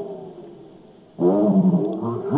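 A voice recorded on cassette, played back slowed down by an added speed potentiometer on a Philips cassette recorder and heard through its built-in speaker. The voice is dragged low and drawn out, so it sounds like a growl: a falling syllable fades over the first second, then a louder, drawn-out one starts a little past halfway.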